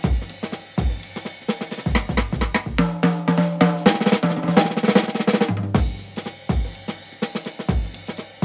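Background music with a driving drum-kit beat of kick, snare and hi-hat; from about three seconds in to five and a half, the beat gives way to a denser stretch of held low notes before the drums return.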